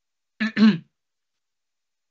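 A person clearing their throat once: a short two-part voiced 'ahem' about half a second in.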